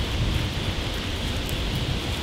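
Wind buffeting the microphone: a steady rushing noise with a fluctuating low rumble.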